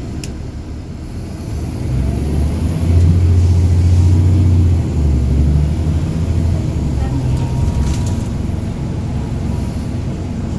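Caterpillar C13 diesel engine of a NABI 40-SFW transit bus, heard from inside the cabin as the bus pulls along. It builds up about a second and a half in, is loudest a few seconds in, then settles to a steadier drone.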